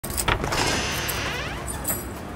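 Electronic keypad door lock being unlocked: a sharp click, then its small motor whirring for about a second as the bolt draws back.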